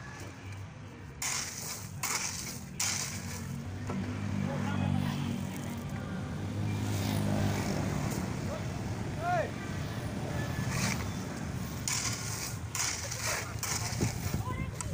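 Shovel and hoe blades scraping and scooping into a pile of sand and gravel. There are a few sharp scrapes about a second in and again near the end.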